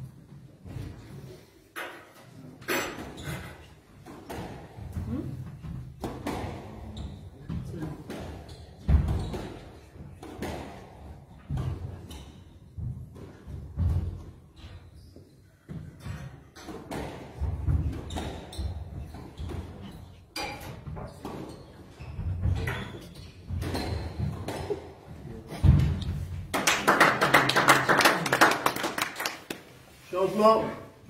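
Squash rally: the ball is struck by rackets and hits the walls in an irregular series of sharp knocks. About 26 seconds in, the rally ends and spectators clap for about three seconds.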